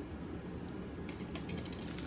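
Quiet room tone: a steady low hum and faint hiss, with a few faint ticks late on.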